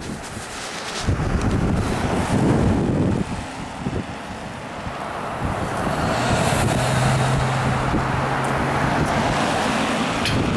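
A car passing close by on the road, its tyre and engine noise swelling about a second in, with a steady low engine hum later on. Wind buffets the microphone throughout.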